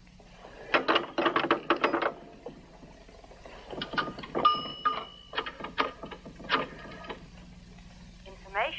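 Rotary telephone being dialed: two runs of quick dial clicks, with a brief steady ringing tone in the middle of the second run.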